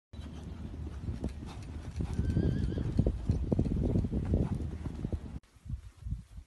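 Rapid thudding hoofbeats of a mare and foal cantering on a sand arena, with a brief, quavering horse whinny about two seconds in. Near the end the hoofbeats give way suddenly to quieter, sparser hoof thuds.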